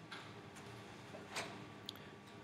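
Two faint taps of a stylus on a tablet's glass screen, about half a second apart, over quiet room tone.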